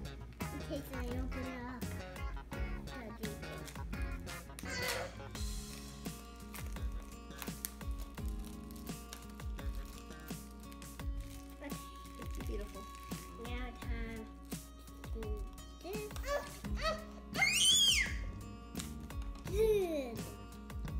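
Background music, with a young child's wordless voice now and then and a loud high squeal near the end.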